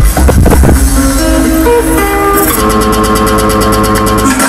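Electronic dance music played loud through a DJ's sound system. The kick-drum beat drops out about a second in, leaving a guitar-like plucked melody with held notes, and a fast ticking hi-hat pattern comes in a little past halfway.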